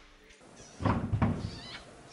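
A horse calling out once, about a second in, loud at first and then trailing off.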